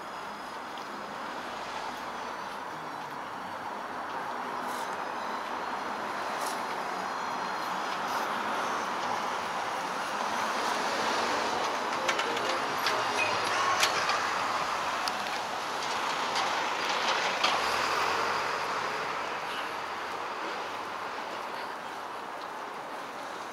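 Elevated subway train passing on the overhead tracks: a rumble and clatter that builds for several seconds, is loudest in the middle with scattered rattling clicks, then fades away.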